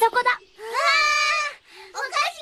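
Cartoon voices: a quick excited exclamation, then one long, drawn-out cry of delight.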